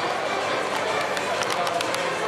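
Indistinct chatter of many voices echoing in a large sports hall, with a few short sharp clicks or squeaks scattered through it.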